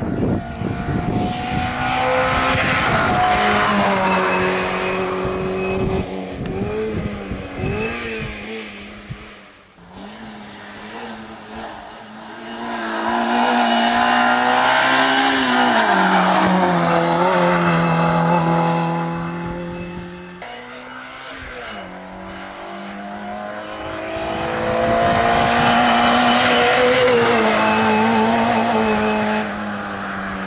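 Autobianchi A112 Abarth's four-cylinder engine driven hard at racing revs, the pitch climbing and dropping through gear changes as the car comes up and passes. It swells and fades three times.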